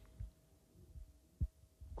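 Faint steady hum in a pause of speech, with two soft low thumps, about a quarter second and a second and a half in.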